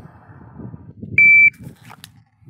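Shot timer's start beep: one steady high-pitched tone, about a third of a second long, a little over a second in, signalling the shooter to draw.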